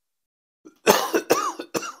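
A man coughing into his hand: three sharp coughs in quick succession, starting about a second in, after a brief silence.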